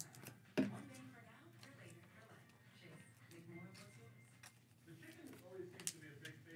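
Quiet handling of trading cards and packs on a table, with a sharp click about half a second in and another just before the end. A faint voice runs underneath.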